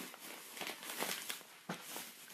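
Kinder Surprise chocolate shell being bitten and chewed close to the microphone, a run of irregular small crackles and crunches.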